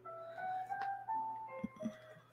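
Soft background music: a melody of single chime-like notes stepping up and down, with a couple of light taps near the end.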